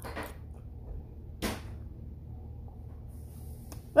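A spoonful of corn being eaten: a short scrape of the spoon at the mouth at the start, then one sharp knock about a second and a half in and a faint click near the end, over a low steady hum.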